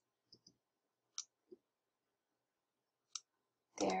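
Faint computer mouse clicks with near silence between them: a quick double click, then a few single clicks spread over the following seconds.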